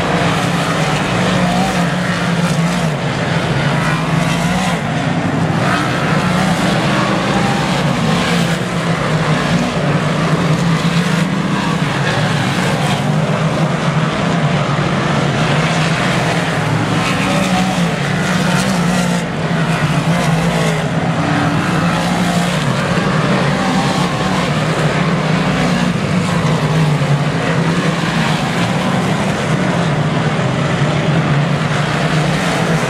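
Big-block dirt modified race cars running at racing speed: a loud, continuous V8 engine drone whose pitch rises and falls slightly as the cars circle the track.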